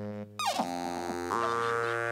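Live band music: a sustained, droning chord over a low note, broken about half a second in by a quick downward pitch swoop before the chord resumes.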